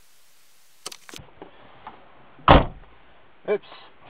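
A car door shutting: one heavy thud about halfway through, after a few light clicks.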